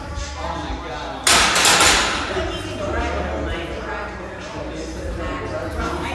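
A loaded barbell dropped onto the rubber gym floor about a second in: one loud crash of bumper plates that rattles briefly as it settles, over background chatter.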